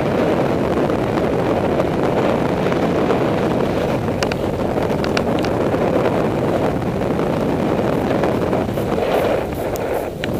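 Wind rushing over the microphone of a camera worn by a skier going downhill, a steady, even noise with a few faint clicks about halfway through.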